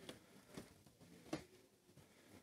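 Near silence: faint room tone with a few soft clicks, the sharpest a little past the middle.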